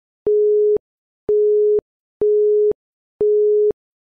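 Electronic countdown-timer beeps ticking off the seconds: a steady mid-pitched tone about half a second long, four times about once a second, each starting and stopping abruptly.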